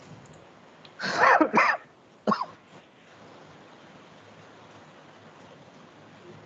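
A person coughing: three rough coughs within about a second and a half, starting about a second in, the first two loudest.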